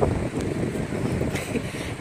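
Wind buffeting the phone's microphone: an uneven low rumble.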